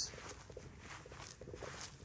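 Faint, uneven footsteps through grass and brush.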